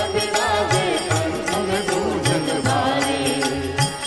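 A male voice singing a devotional bhajan to Mahadev (Shiva) in a Rajasthani folk tune, accompanied by an Indian devotional ensemble with a steady drum beat of about two strokes a second and stringed instruments.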